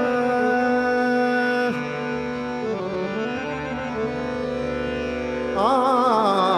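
Male natya sangeet vocal with harmonium accompaniment. A note is held for about the first two seconds, then the harmonium carries the melody alone in steady reedy notes. The singer comes back near the end with quick, wavering ornamented phrases.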